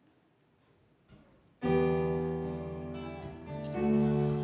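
Live band starts a song about a second and a half in: acoustic guitar and keyboard strike a sustained chord together that slowly fades, then move to a new chord near the end.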